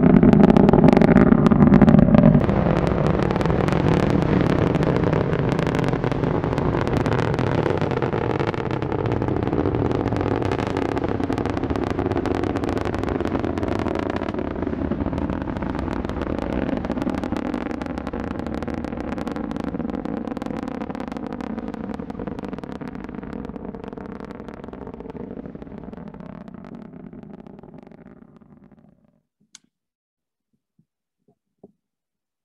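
Falcon 9 first stage's nine Merlin 1D engines heard from about three miles away during ascent: a deep rumble with sharp crackle, loudest in the first two seconds, then fading steadily as the rocket climbs away. The sound cuts off suddenly near the end.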